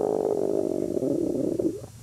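A man's voice making one long, drawn-out, rasping sound without words, lasting about two and a half seconds and trailing off near the end.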